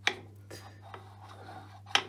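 Cast-iron Myford Super 7 tailstock base being rubbed and rocked by hand on the lathe bed: metal sliding on metal, with a sharp click right at the start and another just before the end. This is a contact test of the base on the bed before scraping.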